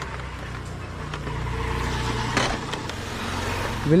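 Yamaha MT-15 motorcycle's single-cylinder engine running at low speed, getting louder through the middle and easing off near the end. A single short knock about two and a half seconds in.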